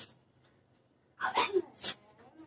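A person's short, loud vocal outburst, a cry or shout with a breathy, sneeze-like burst at its end, coming about a second in after a quiet stretch.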